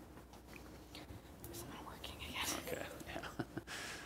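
Faint, low voice close to a whisper, with breath noise and a few small clicks near the end.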